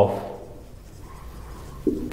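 Marker pen writing on a whiteboard: a faint rubbing of the felt tip across the board as words are written.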